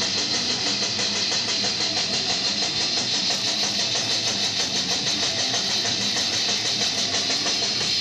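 Death metal/metalcore band playing live: heavily distorted electric guitars over fast, even drumming, with no vocals at this point. Loud and dense, heard from the crowd through a camcorder's microphone.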